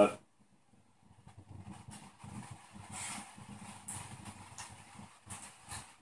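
A person quietly smelling a glass of beer held to his face: faint, irregular sniffs and small handling sounds, starting about a second in.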